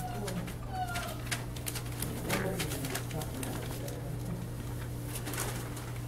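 Six-week-old puppies giving a few faint, short whimpers near the start and about a second in, over scattered rustling and scratching of paws on newspaper.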